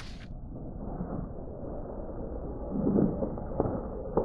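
Slowed-down sound of a concrete block being flicked over on a gloved finger and caught in the hand. It comes through as a low, muffled rumble, with a swell of handling noise a little before three seconds in and a dull knock near the end as the block settles in the gloves.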